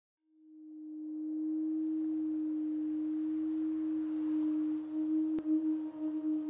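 A single steady low electronic drone tone, part of the soundtrack's opening, fading in over about a second and then holding, with fainter higher tones joining near the end and one sharp click shortly before it ends.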